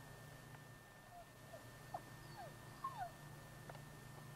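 Faint, short, high whines from a tracking dog, five or six falling whimpers in quick succession in the middle, over a steady low hum.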